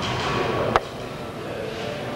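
A single sharp click about three-quarters of a second in, after which the room sound drops to a lower, steady level.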